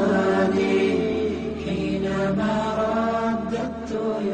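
A voice chanting long, slowly bending held notes over a steady low drone, as devotional background vocal music.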